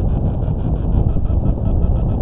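A steady, loud low rumble of noise with no distinct events in it.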